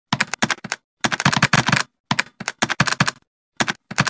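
Keyboard typing sound effect: rapid key clicks in several short bursts, with dead silence between them.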